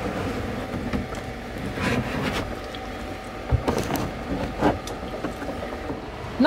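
A plastic methanol-injection tank being lifted out of its well in a car's trunk: handling scrapes and a knock about three and a half seconds in, over a steady low rumble.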